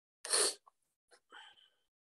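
A person sneezing once: a short, sudden burst about a quarter second in, followed by a few faint small sounds.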